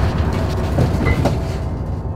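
A loud, low rumbling drone with a rattling, clattering noise on top, slowly fading: a horror sound-design hit.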